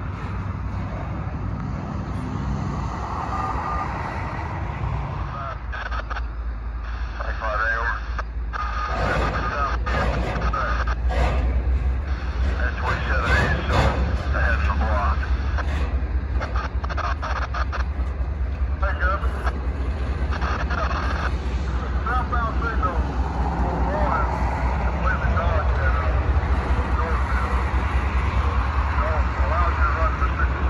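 Double-stack intermodal freight train's well cars rolling past, wheels running on the rails with a steady low rumble and a wavering squeal coming and going. The rumble grows louder from about nine seconds in.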